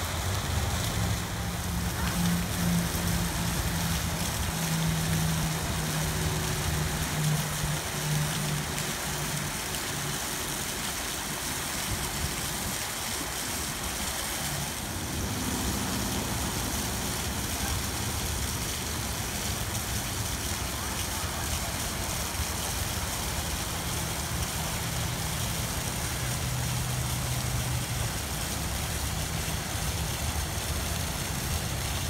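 Bumper boat motors running with a low steady hum that shifts in pitch, over the constant splashing of a waterfall into the pool.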